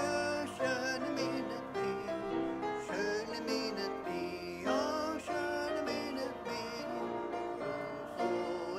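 Congregation singing a hymn with instrumental accompaniment.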